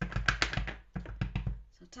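A clear photopolymer stamp on an acrylic block being tapped quickly and repeatedly onto a StazOn ink pad to load it with ink: two fast runs of soft taps, several a second, with a short pause about three-quarters of a second in.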